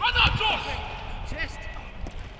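A football struck hard with a thud at the start, followed by players shouting across the pitch.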